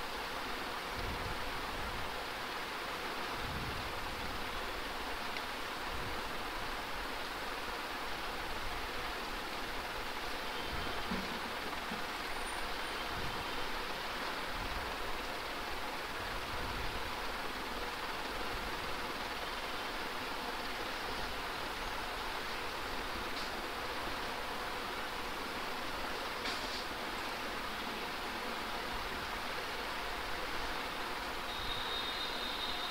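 Steady background hiss with a faint steady hum: the room noise of an open microphone, unchanged throughout.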